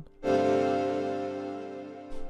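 A soloed piano-style keyboard chord from the track's harmony part, struck about a quarter second in and held, fading steadily. It plays through a parametric EQ set to boost the mids, which gives it a little more oomph.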